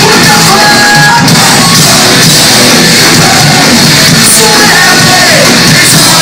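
Pop-punk band playing live in a hall at full volume: electric guitars, drums and singing.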